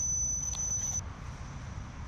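Low street ambience: a steady low rumble of distant traffic, with a thin high-pitched tone that stops about halfway through.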